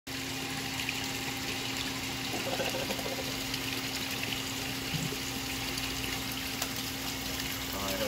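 Steady running water with a constant low pump hum, from a backyard pond water feature.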